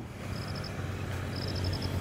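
Outdoor background: a steady low hum, with short trains of rapid high-pitched chirps repeating about once a second.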